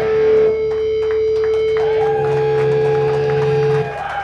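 Live metallic hardcore band ending a song: the drums drop out about half a second in and the distorted electric guitars and bass hold a final ringing chord, which cuts off suddenly just before the end.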